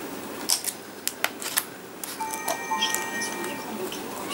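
Sharp clicks and taps of nail-stamping tools handled against a metal stamping plate, followed about two seconds in by a brief ringing tone of several steady pitches that lasts about a second.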